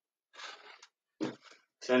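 A man breathing hard after a set of explosive squats: a faint breathy exhale, then a short sharper breath a second or so in.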